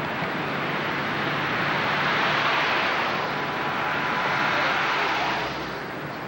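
Road and wind noise of a car driving on a highway, heard from inside the car. It swells after about a second, holds, and eases off shortly before the end.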